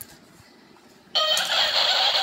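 Copycat toy bird in its cage sounding off in a high, squeaky mimicking voice through its small speaker, starting suddenly about a second in.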